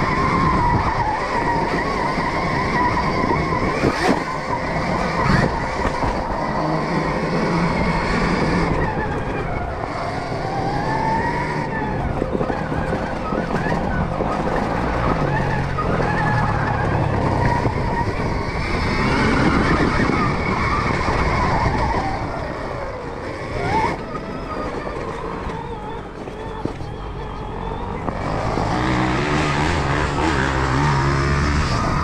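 Stark Varg electric dirt bike riding a rough, muddy trail: the electric motor whines, its pitch rising and falling with throttle and speed, over the rattle of the drivetrain, suspension and knobby tyres, with a few sharp knocks as the bike hits bumps.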